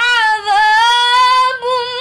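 A young girl reciting the Quran in melodic tilawah style, holding long, ornamented notes at a high, steady pitch. The voice breaks off briefly twice.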